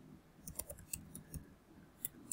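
Faint computer keyboard typing: a quick run of about six keystrokes starting about half a second in.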